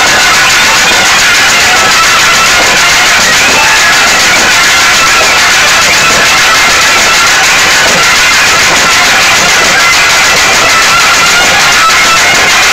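Loud live music: a reed wind instrument holding long, steady notes over continuous drumming, recorded near full scale.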